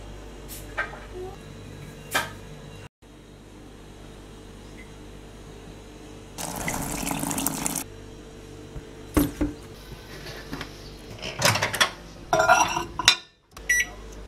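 Water pouring into a mug for about a second and a half near the middle, amid scattered clicks and knocks of handling. Near the end a quick run of clicks and a short beep from a microwave's keypad as it is set.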